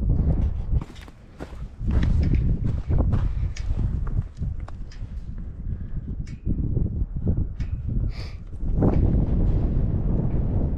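Footsteps on dry, clumpy dirt, a rapid run of short scuffs and crunches, with wind rumbling on the microphone.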